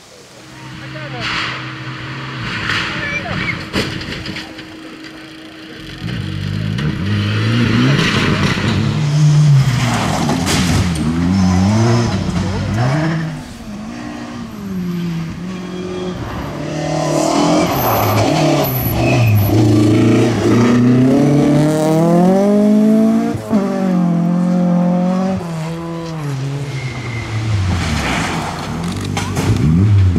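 Rally car engine on a gravel special stage, revving hard with its pitch climbing and dropping repeatedly through gear changes and lifts as the car approaches; faint at first, loud from about six seconds in.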